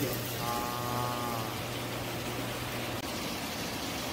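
Steady rush of aquarium water circulating and splashing in a stingray tank, over a low, steady hum. A short, drawn-out vocal sound is held for about a second near the start.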